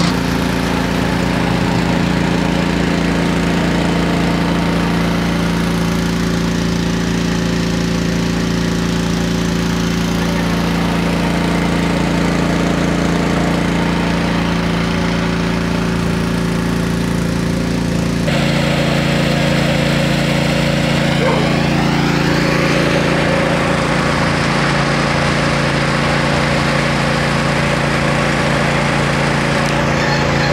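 An engine running steadily at an even pace, with an abrupt shift in its tone about eighteen seconds in.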